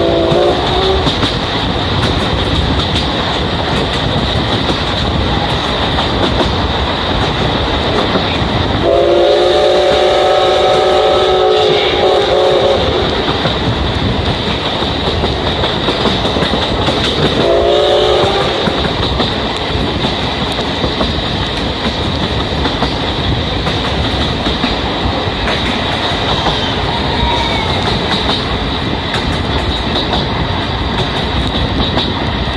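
Steam-hauled passenger train running on rails, heard from inside the coaches, with steady running noise and wheel clatter. The steam locomotive's whistle sounds three times: a brief blast at the start, a long one of about four seconds around ten seconds in, and a short one about eighteen seconds in, each rising in pitch as it opens.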